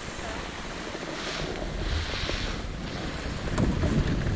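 Wind buffeting a helmet-mounted camera's microphone: a steady low rumble and hiss, swelling twice in the middle, with a sharp click near the end.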